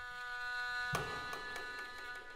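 Haegeum (Korean two-string fiddle) holding one long, steady bowed note in a slow court-music piece, with a light percussive stroke about a second in.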